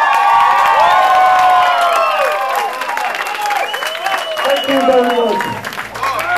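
Live audience cheering and applauding after a song, many voices shouting over dense clapping.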